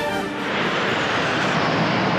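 Formation of jet aircraft flying over: a loud, even rush of jet engine noise that swells in about half a second in, holds, and begins to fade near the end, as music fades out at the start.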